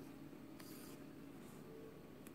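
A faint, brief scratchy rustle about half a second in: needle and thread being worked through felt and glass beads during bead embroidery, over quiet room tone.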